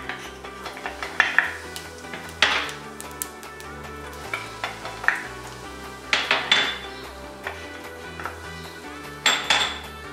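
Metal clinks and a few short scrapes against an aluminium cooking pot as spices go into the oil, over steady background music.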